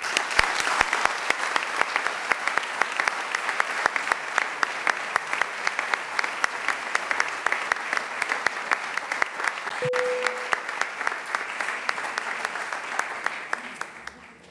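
Audience applauding, a dense steady run of claps that dies away near the end. A short steady tone sounds briefly about ten seconds in.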